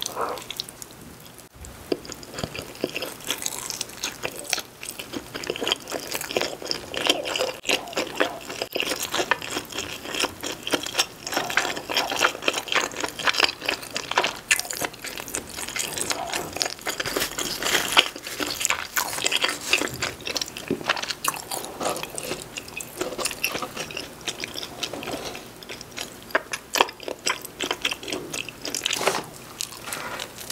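Close-miked chewing and biting of pepperoni cheese pizza: a steady stream of small clicks and crackles from the mouth.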